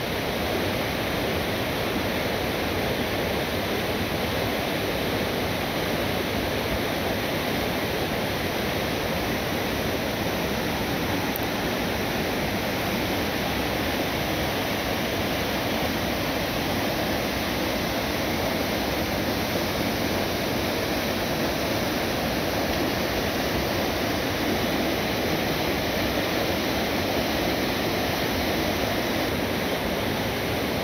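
Whitewater rapids of a small waterfall pouring over and between rocks: a steady, even rush of fast-flowing water that holds at one level throughout.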